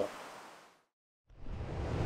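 Faint steady rush of river water fades out to a moment of total silence at an edit, then comes back in louder with a low rumble, about a second and a half in.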